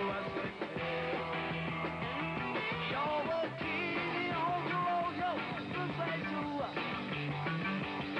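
A rock and roll band playing, with electric guitars, bass and drums; a melody line with bending notes comes in about three seconds in.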